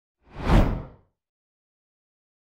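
A single whoosh sound effect with a deep low end, swelling and fading out within about a second, for an animated title graphic.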